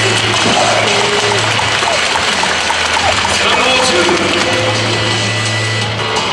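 Music and an announcer's voice playing together over a stadium public-address system, loud and continuous.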